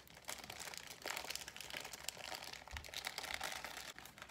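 Plastic Torcida snack bag crinkling continuously as it is handled and opened.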